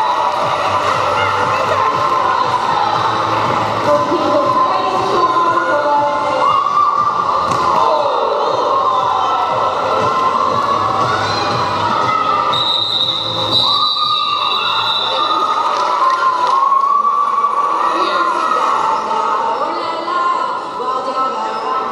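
Roller derby play in a large hall: quad roller skates rolling and knocking on the wooden sports floor, under a steady mix of voices and background music.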